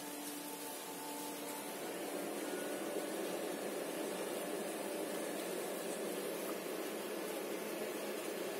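Steady background noise: an even hiss with a faint hum, a little louder from about two seconds in.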